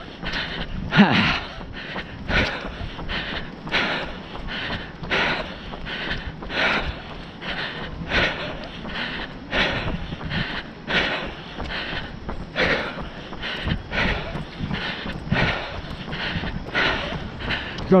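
A runner's heavy, rhythmic breathing close to the microphone, roughly three breaths every two seconds, in time with a steady running pace.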